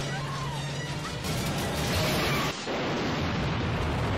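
Action-movie soundtrack: a music score under a large explosion and the roar of fire as a school bus blows up, with a dense, steady wall of sound and no clear single bang.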